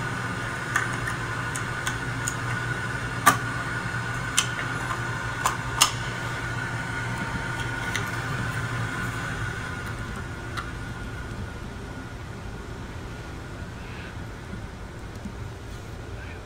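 Steady low hum of a car engine idling, with a faint steady whine above it. A handful of sharp clicks and taps in the first six seconds come from the fuel filler door and gas cap being handled. The hum eases down slightly over the last few seconds.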